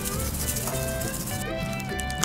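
Seasoning-rub shaker shaken over a bowl of filling, the dry granules rattling, over background music.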